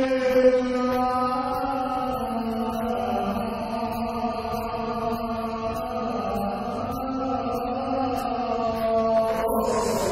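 A man singing a sevdalinka in one long, sustained, ornamented phrase, his pitch slowly wavering and bending, amplified through a stage microphone.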